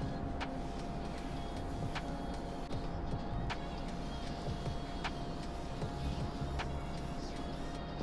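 Pencil lead scratching on paper as circles are sketched, a soft, even scratching, with a faint steady tone and light ticks about every second and a half beneath it.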